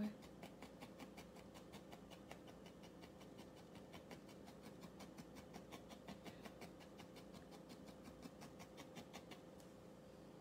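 Barbed felting needle repeatedly stabbing into wool against a foam pad, faint rhythmic pokes about four to five a second that stop shortly before the end, as a little extra wool is felted onto the heart shape.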